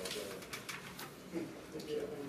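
Papers rustling and being handled at a meeting table, with a few short clicks, and low murmured voices in the second half.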